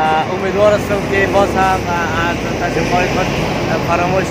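Men talking over the steady low sound of a bus engine running.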